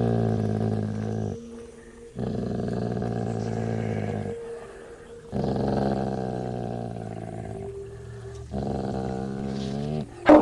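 A large dog growling low: four long growls with short pauses between them.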